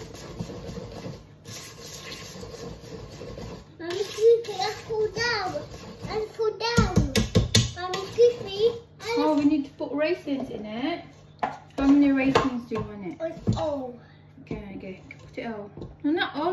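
A young child and a woman talking. For the first few seconds there is only a rustling noise of batter being mixed by hand in a steel mixing bowl, and about seven seconds in there is a short cluster of dull thumps.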